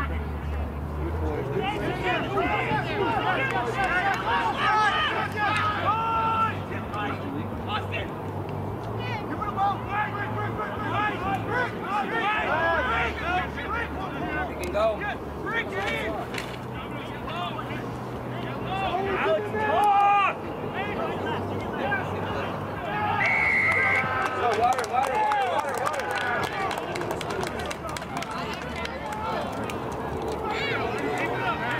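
Indistinct shouting and calling from players and spectators across an open rugby field, a steady babble of voices with no clear words, over a low rumble. A brief high-pitched steady tone stands out about three-quarters of the way through.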